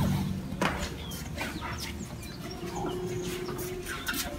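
A metal door bolt clacks once about half a second in, then a quiet background with faint bird chirps.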